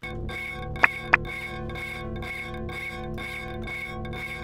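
OSCiLLOT modular synth patch in Ableton Live playing a sustained electronic drone through a wave shaper and a filter bank, with a high tone pulsing about three times a second. Two sharp clicks come about a second in.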